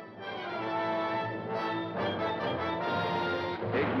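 Orchestral film score with brass playing sustained chords that change a few times.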